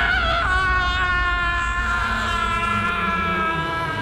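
A man's long scream, held unbroken and slowly dropping in pitch as it fades, as he falls down a deep shaft, over a low rumble.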